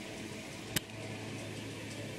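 Quiet room background hiss with one short sharp click less than a second in, followed by a faint steady low hum.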